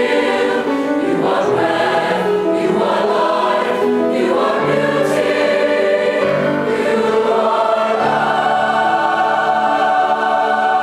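A large mixed-voice choir singing, holding sustained chords that shift every second or so.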